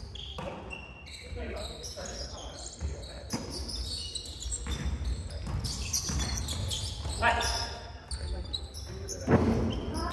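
Basketball being dribbled on a wooden gymnasium court, a run of thuds that echo in the hall, mixed with short high squeaks of players' shoes. Players' voices call out near the end.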